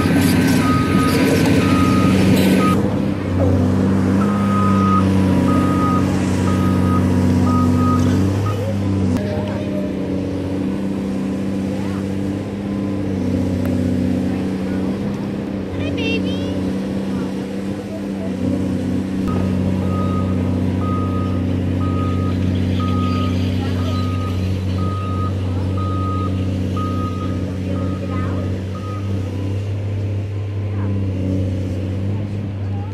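Heavy construction machinery running with a steady low engine hum, its reversing alarm beeping at an even pace of about one and a half beeps a second through roughly the first third and again through most of the last third.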